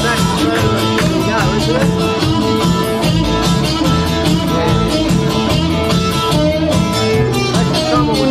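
Live rock 'n' roll band playing dance music: guitar over a steady beat.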